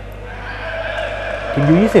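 Indoor volleyball crowd and arena noise, fairly quiet, with a faint steady held tone that starts about half a second in, under the match commentary; a commentator's voice comes in near the end.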